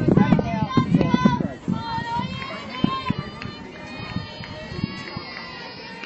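Softball players and spectators calling out and chattering, loudest in the first few seconds and then dying down.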